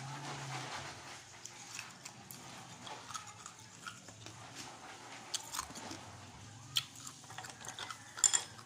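A person chewing and crunching ice close to the microphone, with small irregular crackling clicks.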